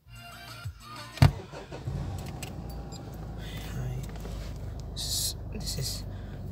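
A sharp click about a second in, then the steady low engine and road rumble of a 2010 Mitsubishi Montero Sport SUV heard from inside the cabin as it pulls away and drives.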